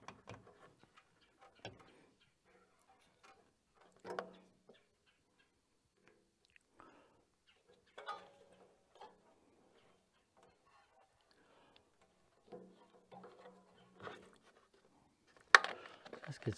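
Intermittent small clicks and rattles of hands working a rubber fuel hose and its clip onto a portable generator's fuel fittings, with a sharper, louder click shortly before the end.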